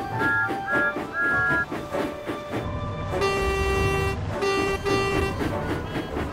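Steam locomotive whistle sound effect: one long toot about three seconds in, then two short toots, over background music.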